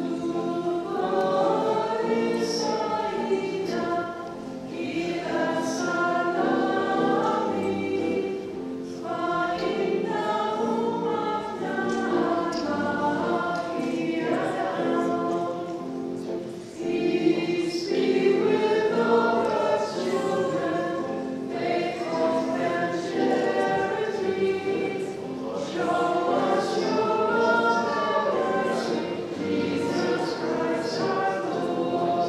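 Voices singing together in a Maronite liturgical hymn, phrase by phrase, with short pauses between lines.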